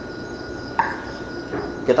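A pause in a man's speech, filled with low background noise and a faint, steady, high-pitched tone. A brief vocal sound comes a little under a second in.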